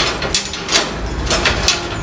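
Steel rebar scraping and clicking against a reinforcement cage as a bent bar is slid along it, a quick series of short metallic scrapes.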